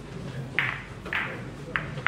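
Billiard balls clicking: three sharp clacks about half a second apart, over a low murmur of voices.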